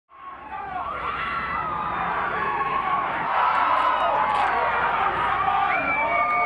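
Many men's voices chanting and shouting a rugby team's pre-match war dance challenge, over crowd cheering, fading in at the start.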